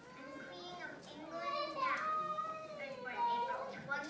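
A young girl speaking into a microphone, her words unclear.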